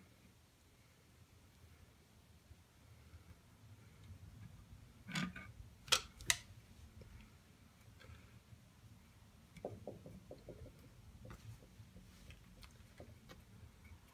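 Faint, sparse clicks and taps of an adjustable wrench working on the intake gasket of an LSA supercharger's port flange, bending the warped gasket back into shape. There is a knock and two sharp clicks about five to six seconds in, then a run of small ticks around ten seconds.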